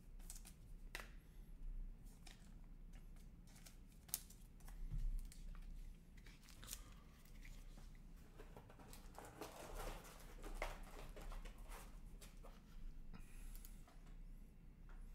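Faint handling of trading cards and clear plastic card sleeves: scattered soft clicks and crinkling, with a longer rustle about two-thirds of the way through.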